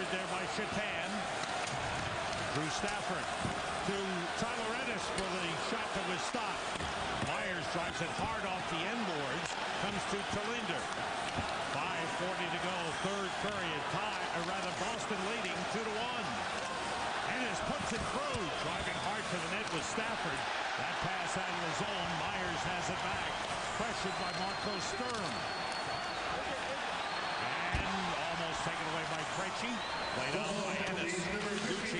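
Hockey arena crowd noise, a steady mass of many voices, with scattered knocks and clacks from sticks, puck and boards during live play on the ice.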